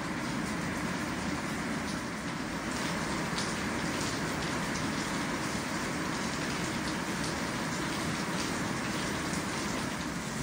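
Liquid poured from a plastic jug, then from a bottle, into jugs standing on a kitchen scale, over a steady rushing noise.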